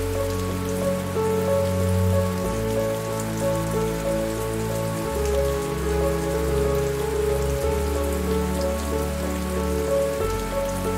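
Steady rain falling, with a soft hiss and patter, together with piano music whose low bass notes change about every two and a half seconds.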